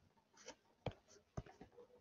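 A few faint, short ticks and scratches of a stylus writing on a pen tablet.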